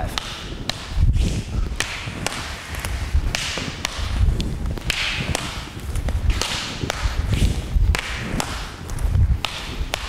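An eskrima partner drill with wooden training sticks: sharp, irregular clicks and taps as sticks and hands meet, with thudding footfalls on the mat and swishing movement.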